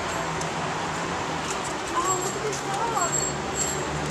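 Busy street ambience: a steady wash of traffic noise with a low engine hum. Faint voices come and go in the background about halfway through.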